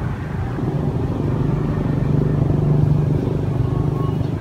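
An engine running with a low, steady hum that grows louder about two seconds in and eases off slightly near the end.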